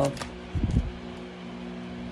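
A steady mechanical hum made of several fixed low tones, with a short low thud about half a second in.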